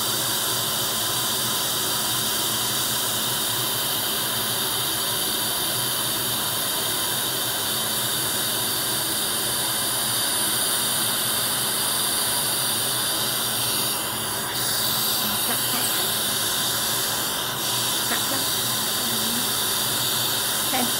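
Dental suction tip running in the patient's mouth: a steady hiss of suction, with two brief dips in level near the end.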